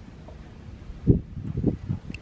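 Scissors cutting through a cotton t-shirt sleeve, with a cluster of low, muffled bumps from about a second in.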